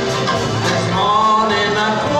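A ukulele-banjo strummed with a small live band of drums, keyboard and guitar playing an upbeat song, with a man singing.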